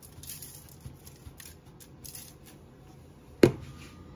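Old Bay seasoning shaken from its shaker can onto salmon in a foil-lined pan: faint, light crackling patter. A single sharp knock about three and a half seconds in, the loudest sound.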